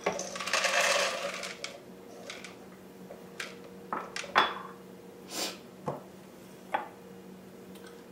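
Pine nuts poured into a plastic food processor bowl, a rattling patter lasting about a second, followed by scattered light taps and clinks as the small glass bowl is emptied with a spatula.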